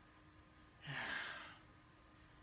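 A man sighs once, a breathy exhale about a second in that lasts under a second.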